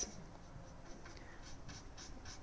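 Paintbrush strokes on a wooden end table: a French tip brush, lightly loaded with paint, makes a run of faint, short, scratchy brushing sounds.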